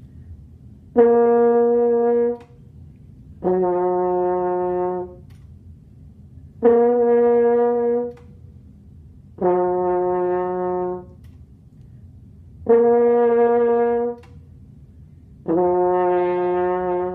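French horn playing lip push-ups, a beginner embouchure exercise: a high written F on the first valve and a low open C, alternating. Six separate held notes, each about a second and a half, high then low, with short breaths between them; the last note is still sounding at the end.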